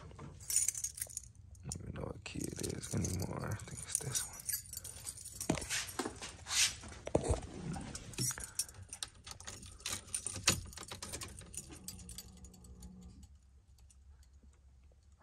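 Car keys jangling and clicking among small knocks and rattles as someone climbs into a box-body Chevrolet Caprice and works the key into the ignition. Near the end a short steady buzz sounds: the dash warning buzzer coming on, a sign the new battery has some power.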